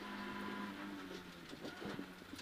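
Suzuki Swift rally car's engine heard faintly from inside the cabin, a steady low note that eases off in the second half as the car approaches a right hairpin.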